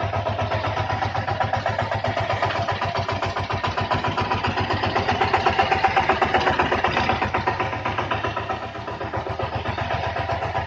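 Walk-behind power tiller's single-cylinder diesel engine chugging steadily as it is driven over spread rice stalks to thresh them. The beat swells a little about halfway through and dips briefly near the end.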